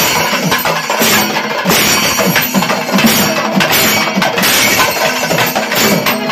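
Kerala chenda melam: cylindrical chenda drums struck with curved sticks and brass ilathalam hand cymbals clashing together in a steady, rapid rhythm.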